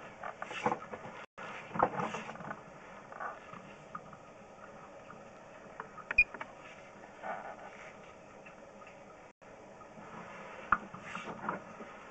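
Faint, scattered clicks and knocks over a low hiss: the push cable of a sewer inspection camera being fed down a clay tile waste line.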